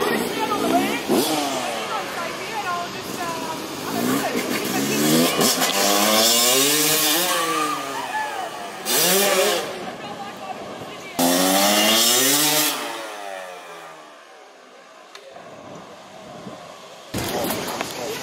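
Off-road vehicle engine revving up and down in several rising and falling sweeps, with loud rushes of noise around the middle, as it is driven at the jump ramp.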